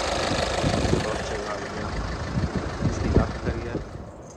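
Skoda TDI diesel engine running at idle with the bonnet open, with a steady clatter of short knocks. It has just been brought back to life with jump leads.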